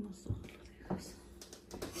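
A woman's voice in short broken fragments, with a few light clicks between them.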